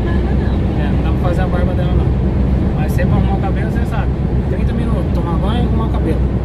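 Steady low drone of a car-transporter truck's engine and tyres heard inside the cab at motorway speed, with a voice talking over it in short stretches.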